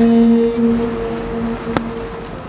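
A ship's horn sounding one long, steady blast that stops abruptly with a click near the end.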